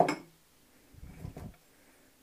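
A single sharp knock of a hard object being put down, fading quickly, then fainter handling noise about a second in.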